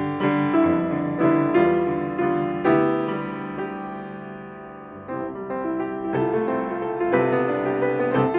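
Solo Baldwin grand piano playing chords under a melody. About three seconds in, a chord is left to ring and die away for a couple of seconds before the playing picks up again.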